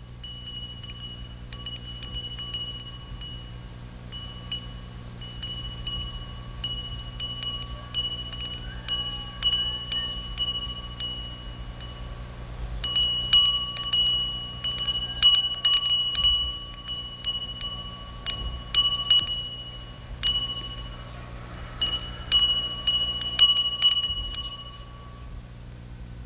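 Wind chimes or small hanging bells tinkling irregularly. Each strike rings on at the same few fixed pitches, sparse at first and busier and louder about halfway through, over a steady low hum.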